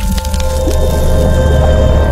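Logo-reveal intro sting: a sharp hit, then a spray of small clicks over a deep bass drone and held synth tones.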